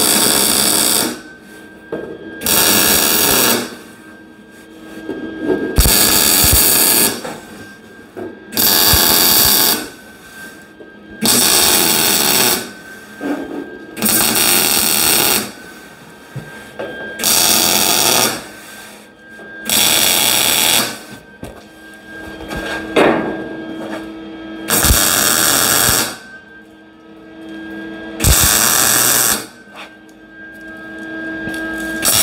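MIG welder laying a run of tack welds on the fin tubing: about a dozen crackling arc bursts, each about a second long, a couple of seconds apart, with quieter gaps between them.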